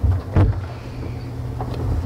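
A steady low hum on the sound system, with a single thump about half a second in.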